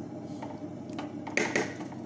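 A utensil stirring boiled lentils in a pot, with a few light knocks and a short scrape against the pot about one and a half seconds in.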